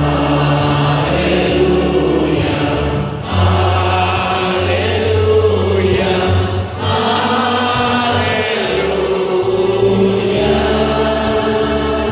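Sung responsorial psalm: voices holding long notes over sustained accompanying chords that change every few seconds.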